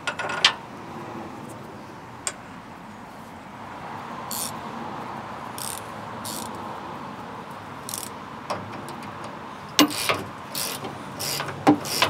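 Scattered short metallic clicks from a GearWrench 120XP ratcheting wrench on a lock nut. They come sparsely at first and close together in the last two seconds, over steady faint background noise.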